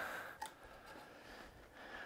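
Quiet barn ambience: faint room tone with one soft click about half a second in.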